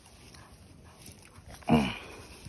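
A single short bark from a young black pit-bull-type puppy, about a second and a half in, with its pitch dropping slightly.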